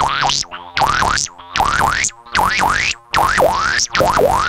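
Korg MS-20 analogue synthesizer playing a run of about six short notes, each swooping down and then sharply up in pitch, with brief gaps between.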